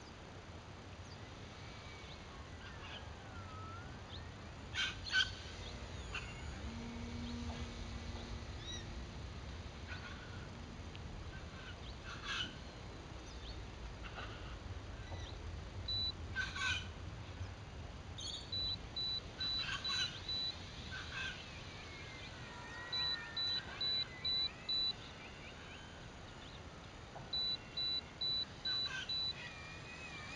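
Birds chirping and calling over faint outdoor background noise, with several runs of short, evenly repeated high pips in the second half. No motor is heard.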